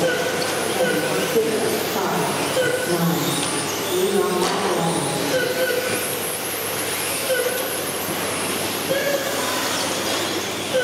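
Several 1/10 electric touring cars with 13.5-turn brushless motors racing round an indoor carpet track, their motors and drivetrains whining as they rise and fall with throttle, echoing in the hall. An indistinct voice is heard underneath.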